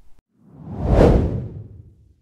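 A single whoosh sound effect, swelling up to a peak about a second in and then fading away.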